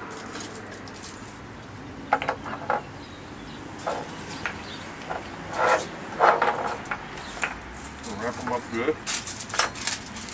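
Aluminium foil crinkling in repeated short bursts as it is handled and folded around the fish, busiest near the end.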